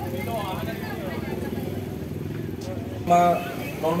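A motorcycle engine running steadily at low revs under crowd chatter, with a man's loud voice cutting in about three seconds in.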